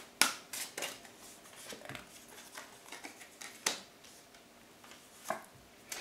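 Tarot cards being drawn from the deck and laid down on a wooden table: a few sharp snaps and taps with soft sliding between, the loudest just after the start and others near the middle and near the end.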